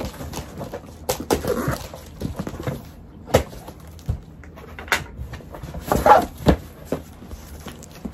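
Cardboard box and paper packing being handled: rustling and scraping with a string of sharp knocks and thumps, and a short squeak about six seconds in.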